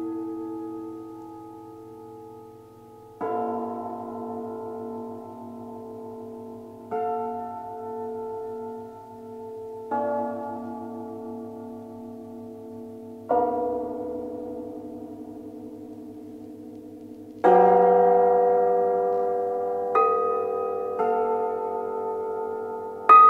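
Cimbalom struck in slow, separate chords, each left to ring and die away before the next, about seven in all at intervals of one to four seconds; the chord some two-thirds of the way through is the loudest.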